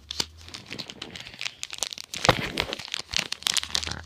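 Foil trading-card booster pack being crinkled and torn open by hand: a dense run of crackles that gets busier about halfway through.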